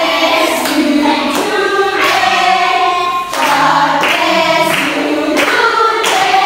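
Several voices singing together in a choir-like sound, the notes changing about once a second.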